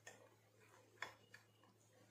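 Near silence with a low steady hum, broken by a faint sharp click about a second in and a weaker one shortly after: a spoon knocking against a plastic bowl while crushed Oreo biscuits and ice cream are stirred together.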